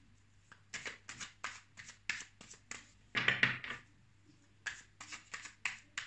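A tarot deck shuffled by hand: a quick string of short rustles of cards sliding against each other, with a longer, louder rustle about three seconds in.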